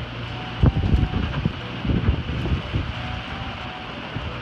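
Strong wind of about 25 knots buffeting the microphone aboard a sailboat as a storm arrives, with heavier rumbling gusts about half a second and two seconds in.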